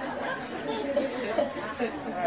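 Low murmur of several people talking at once, quieter than a single clear voice.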